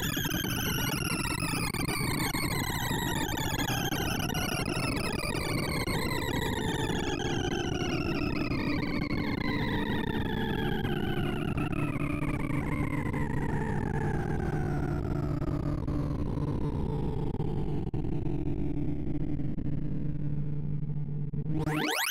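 Sorting visualizer's synthesized beeps sounding the array accesses of a max heap sort on 2,048 numbers: a dense chatter of rapid tones whose overall pitch falls steadily as ever-smaller values are pulled off the heap. Near the end comes a fast rising sweep as the finished, sorted array is checked, and then the sound cuts off.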